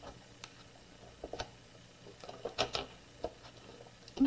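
Plastic scraper rubbing an adhesive vinyl decal down onto a small clear plastic jar, with the jar handled and set down: a few faint scrapes and clicks, bunched about a second in and again around two and a half seconds.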